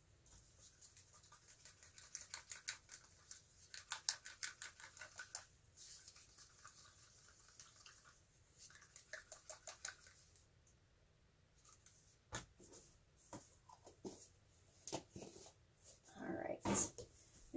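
Wooden craft stick stirring metallic acrylic paint in a cup: faint, rapid scraping and ticking of the stick against the cup, in two spells, followed by a few single sharper knocks in the last few seconds.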